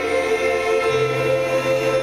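Live rock band playing with held, choir-like vocal harmonies over sustained chords; a low bass note steps up about a second in.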